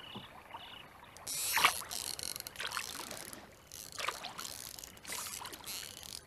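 Oar strokes in lake water from a small wooden rowboat: a swish and splash about once a second. A repeated high chirp is heard at first and stops about a second in.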